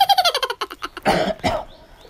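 A person's voice making a short rapid pulsed sound that falls in pitch, then coughing twice about a second in.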